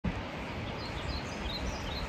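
Outdoor woodland ambience: a small bird chirping, with short high chirps coming a few times a second over a steady low rumbling noise.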